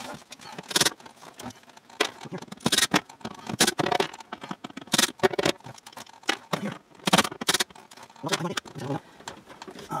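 Irregular clicks, clinks and knocks of hand tools being handled and set down while taking out the screws of a car's glove box, with no power tool running.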